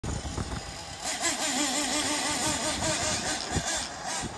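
Kyosho Inferno Neo ST 3.0 nitro RC truggy's small glow-fuel engine running, its pitch wavering up and down as the throttle is worked. It gets louder about a second in.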